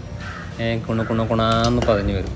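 A person talking, starting about half a second in and running into continuous speech.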